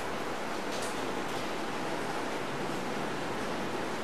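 Steady hiss of background recording noise, with no other clear sound.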